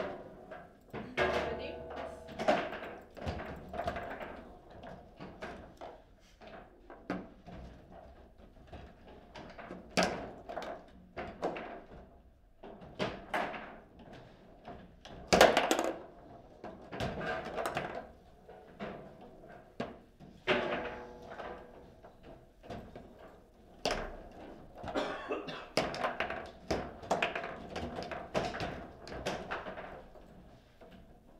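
Table football game in play: irregular sharp knocks and clacks of the ball being struck by the rod figures and bouncing off the table walls, with rods clacking as they are slid and spun. The loudest knock comes about halfway through.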